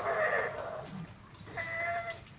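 Pug whining, impatient for its dinner: a high-pitched whine at the start and a second, shorter, steady whine near the end.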